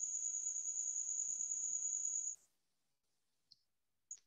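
A high-pitched, steady insect trill, of the kind a cricket makes, that cuts off suddenly a little over two seconds in.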